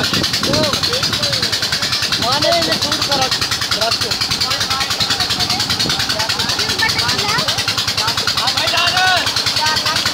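A strong jet of water pouring and splashing into a pool in a steady rush, with children's voices shouting and calling over it, most at the start, about two and a half seconds in, and near the end.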